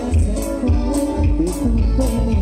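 Band music with plucked guitars and bass over a steady beat, about two beats a second.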